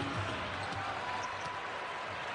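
A basketball being dribbled on a hardwood court, a few low thumps spread through the moment, over the steady noise of an arena crowd.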